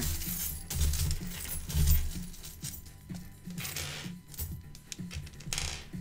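Small metal charms clinking onto a table in a run of sharp little clicks, thickest in the second half, over background music with a steady low beat.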